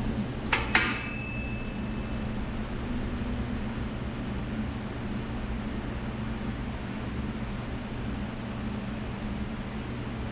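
Two sharp metal clanks about a quarter second apart, less than a second in, the second leaving a brief ringing tone, as the steel pedal support is set in a bench vise; after that only a steady low hum.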